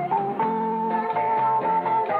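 Band music with electric bass and guitar, one long high note held over the changing bass line from just after the start.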